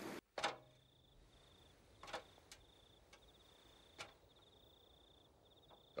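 Faint night ambience: a cricket chirping steadily in a high, evenly broken trill, with a few soft knocks, about one every couple of seconds.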